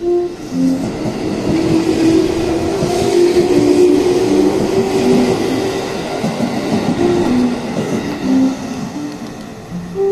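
Electric commuter train running along a station platform, a rushing rail noise that swells over the first few seconds and then eases off. Background music of short notes plays over it.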